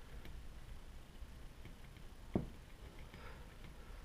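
Quiet room with faint light handling of small engine parts on a bench, and one short soft knock about two and a half seconds in.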